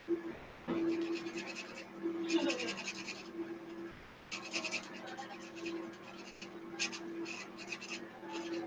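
Felt-tip marker scratching across paper in bursts of quick back-and-forth colouring strokes, over a steady low hum.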